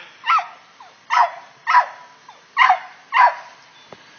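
An animal calling five times in a row: short, harsh calls about half a second to a second apart, stopping near the end.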